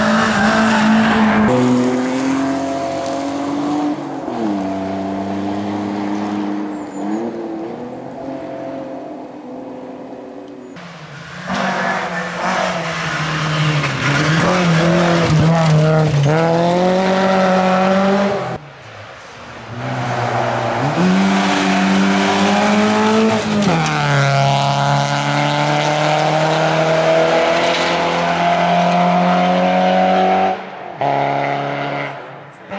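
Rally cars on a gravel stage, one after another: engines revving high and changing gear, the pitch climbing and dropping repeatedly, over the hiss of tyres on loose gravel. The sound breaks off briefly twice as one car gives way to the next.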